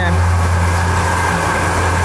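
Feed mixing machine running with a steady low hum, mixing a batch of corn-based pig feed.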